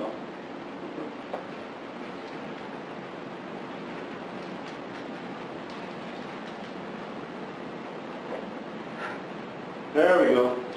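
Steady hiss of classroom room tone carried over a video-conference audio link, with a couple of faint knocks.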